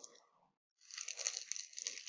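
Magazine with a glossy free-gift cover crinkling and rustling as it is handled, faint at first, dropping out briefly, then louder from just under a second in.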